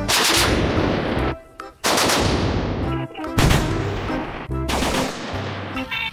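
Rockets launching from a truck-mounted multiple rocket launcher: four loud blasts about a second and a half apart, each a rush of noise that fades away.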